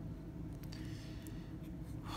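Faint scratchy rubbing of a clear rigid plastic card holder being handled and turned over in the fingers, over a low steady room hum.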